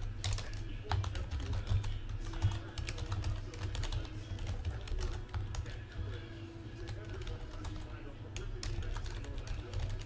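Typing on a computer keyboard: irregular, quick keystroke clicks throughout, over a steady low hum.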